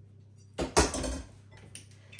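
Metal kitchen tools clattering on a wooden cutting board as a knife is put down and a metal garlic press is picked up: a loud clatter about half a second in, then a few lighter clicks.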